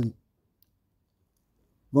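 Near silence between two spoken phrases: a narrator's voice ends sharply just after the start and starts again near the end.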